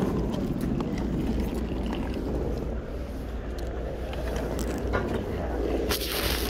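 Wheels of a hard-shell suitcase rolling over stone paving tiles, a steady rumble broken by small irregular clicks as they cross the joints.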